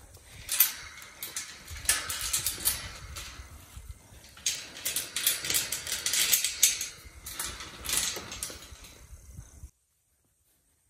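Metal chain clinking and rattling against a galvanized tube farm gate as it is worked by hand, in irregular clusters of sharp clinks. The sound cuts off abruptly just before the end.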